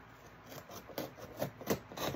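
Hands working at a cardboard shipping box, making a handful of short scrapes and ticks on the cardboard and its packing tape, the last near the end the loudest.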